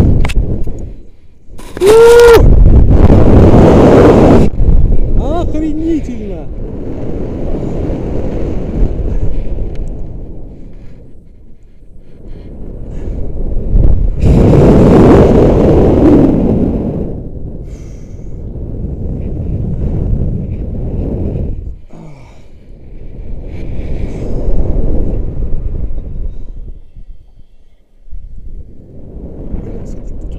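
Wind rushing over a body-worn camera's microphone as a rope jumper falls and swings on the rope: loud for about two and a half seconds from about two seconds in, then swelling and fading in slow waves about every five seconds as the swing goes back and forth. A short voice cry comes as the first loud rush begins.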